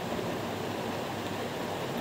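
Steady, even hiss of background room noise with no distinct events.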